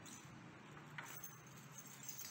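Faint clinking of small metal bolts and washers shaken together in a plastic bag as it is handled, with a brief sharper clink about a second in.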